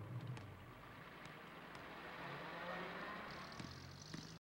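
A car engine running faintly, a steady low hum that swells a little midway.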